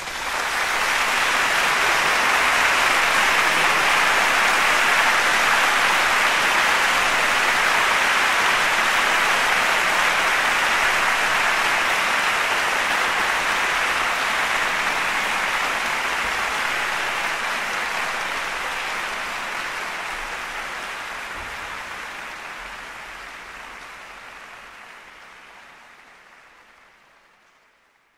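Concert hall audience applauding after the final note of a solo cello piece, a dense steady clapping that fades gradually away over the last several seconds.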